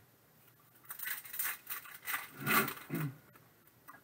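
Trading cards scraping and sliding against each other as a stack is flicked through by hand, a quick run of rubbing strokes from about one second in to three seconds in.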